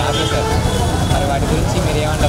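A woman speaking in Telugu close to a handheld microphone, over a steady low background rumble such as street traffic.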